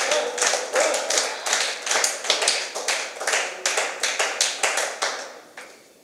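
Clapping, a quick, even patter of about four claps a second that fades out near the end.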